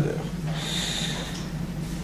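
A man drawing a breath through his nose close to the microphone, a short inhale of about a second in a pause between sentences, over a steady low hum.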